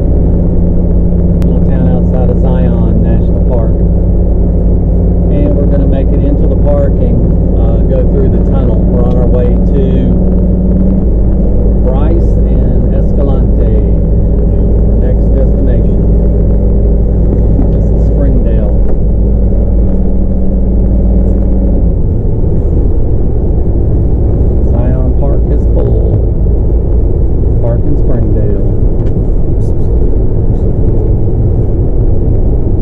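Class C motorhome's engine and road rumble heard from inside the cab while driving along the highway: a steady low drone with a held engine tone that drops away about two-thirds of the way through, as the engine note changes.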